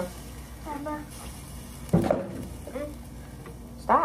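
A few short, wordless voice sounds, with a knock about halfway through and a faint hiss in the first second and a half.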